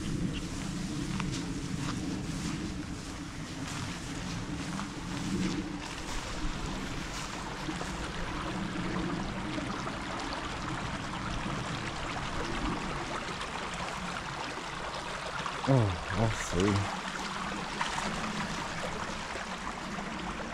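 A small, shallow moorland stream trickling over stones, its running water growing steadily louder after the first several seconds. Before that, steady rustling of movement through tall grass tussocks.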